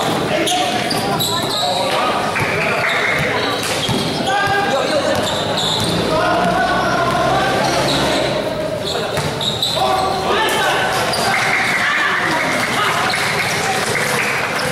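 A basketball game in a large covered hall: the ball bouncing on the hard court amid the shouts and chatter of players and onlookers, echoing off the hall.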